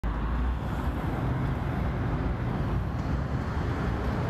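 Steady city street traffic noise: a continuous wash of passing cars, picked up by a phone's built-in microphones.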